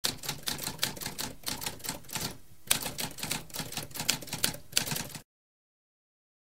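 Typewriter keys being struck in a quick, uneven run of clicks, pausing briefly a little over two seconds in, then stopping about five seconds in.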